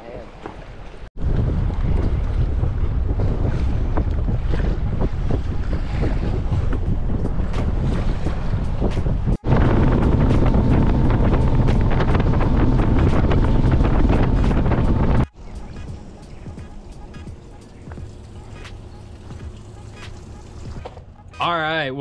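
Bass boat running at speed across a choppy lake: heavy wind rushing over the microphone with the outboard motor underneath, heard in several clips that change level abruptly at each cut. The loudest clip, in the middle, carries a faint steady engine tone, and the last clip is much quieter.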